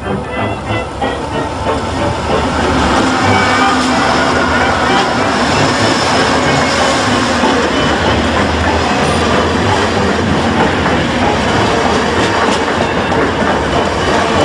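Amtrak passenger train passing close by: the diesel locomotive's noise swells up loud about two seconds in, then the bilevel cars roll past with a steady rumble and clickety-clack of the wheels on the rails.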